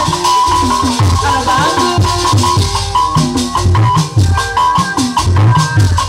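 Live Sundanese jaipongan-style music played on stage. Hand drums give repeated low strokes that fall in pitch, under a steady high melody line and a fast, even rattling percussion beat.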